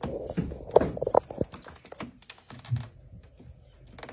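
Irregular clatter of knocks and clicks as a hand and arm work inside a top-loading washing machine's drum, busiest in the first second and a half.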